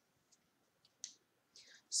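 A quiet pause holding a few faint, short clicks, then a soft hiss just before speech resumes.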